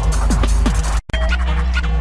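Fast electronic tekno music from a live set, its pitched kick drum falling on each beat about four times a second. About halfway through the sound cuts out for an instant, and the music comes back without the kick.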